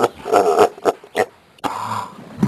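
Several short wordless vocal outbursts from men in quick succession, then a brief pause and a low steady hum near the end.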